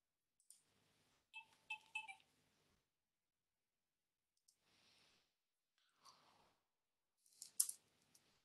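Near silence broken by a few faint computer mouse clicks, with the sharpest click near the end.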